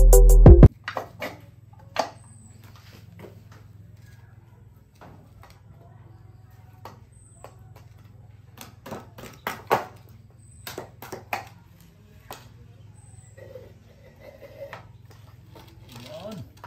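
Background music that cuts off abruptly under a second in, followed by a quiet stretch of scattered light knocks and taps as bamboo poles and tin cans are handled and fitted together.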